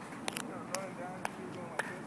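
Faint voices of people talking in the background, broken by a few short, sharp clicks.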